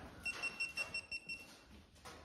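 Rapid electronic beeping: about seven short, high-pitched beeps in quick succession, lasting just over a second.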